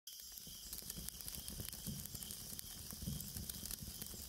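Faint steady hiss with scattered soft crackles and a low rumble underneath: a quiet ambient sound bed.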